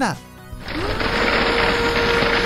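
A steady whirring sound as the drum of a toy cement mixer truck is turned by hand. It starts about half a second in, rising briefly in pitch and then holding an even hum.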